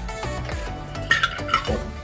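Ice clinking in a metal cocktail shaker tin, two sharp clinks about a second in, as the shaken drink and its ice are poured out into the glass. Background music with a steady beat plays underneath.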